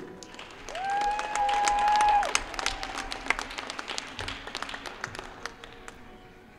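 Audience clapping, with one long, high held cheer from a single voice about a second in. The clapping thins to scattered claps toward the end.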